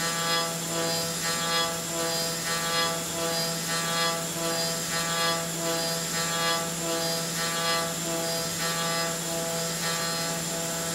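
Haas CNC mill's end mill cutting billet aluminum under coolant spray: a steady spindle hum with a cutting sound that pulses in a regular rise and fall as the tool works.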